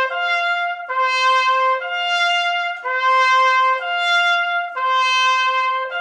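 Piccolo trumpet playing the A-to-D interval over and over: it moves back and forth between the two notes, a fourth apart, about once a second, joining them smoothly. This is a practice of the interval whose D had cracked just before, now using valve combinations and slide extension.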